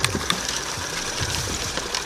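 Camera handling noise: fingers rubbing and tapping on the camera close to its microphone, an irregular string of soft clicks and knocks over a low rumble.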